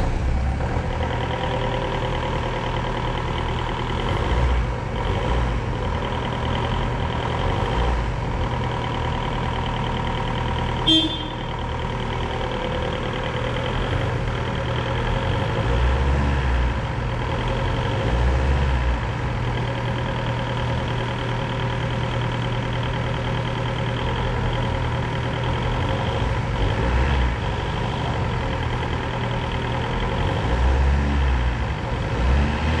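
Linde H50D diesel forklift running, with a steady engine drone and whine that swells a few times. A short loud beep, like a toot of the horn, comes about eleven seconds in.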